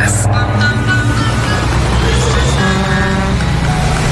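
Steady low rumble of a road vehicle's engine under music, with a brief held pitched tone about three seconds in.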